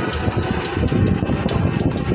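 Wind buffeting the phone's microphone, an uneven low rumble.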